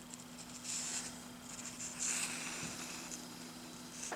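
Paper pages of a comic book rustling as they are handled and turned: two soft rustles, about a second in and about two seconds in, over a faint steady hum.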